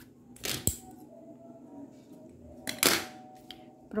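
Two brief swishes of grosgrain ribbon and sewing thread being handled while a stitch is finished off at the back of a bow, the first ending in a small sharp click.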